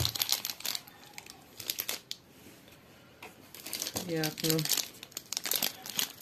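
Plastic shrink-wrap on a multipack of bar soap crinkling as it is handled, in bursts over the first two seconds and again near the end.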